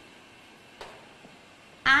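Quiet room with a faint tap or two of chalk on a blackboard during writing. A woman's voice starts just before the end.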